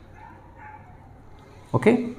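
Faint squeak of a marker drawn along a set square across a whiteboard as the line is ruled, followed about 1.7 s in by a short spoken "okay".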